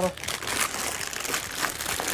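Clear plastic bag wrapped around a resin figurine, rustling and crackling as it is handled. The dense crackle starts just after a short spoken word and lasts about two seconds.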